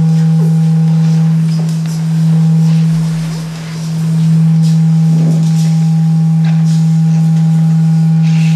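A loud, steady, low pure tone held throughout, like an electronic sine drone, that dips in loudness twice, briefly near two seconds and more deeply about three and a half seconds in. Fainter higher tones come and go over it.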